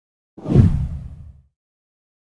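A single deep whoosh sound effect for an intro transition. It swells in just under half a second in and fades out by about a second and a half.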